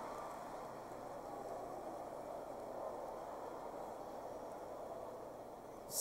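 Large audience laughing, a steady crowd noise that slowly dies down.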